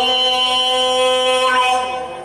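A man's voice in melodic Quran recitation, holding one long steady note that fades away near the end.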